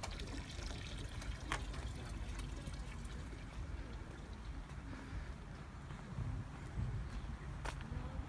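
Faint, steady trickle of running water, with a low rumble and two light clicks, about a second and a half in and near the end.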